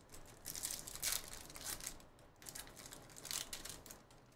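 Wrapper of a 2023 Topps Chrome Star Wars trading-card pack crinkling and tearing as it is ripped open by hand, in a run of short, uneven crackles.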